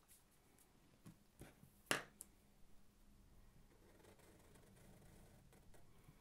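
Near silence, with a few faint clicks and one light sharp tap about two seconds in from Sharpie markers drawing on paper.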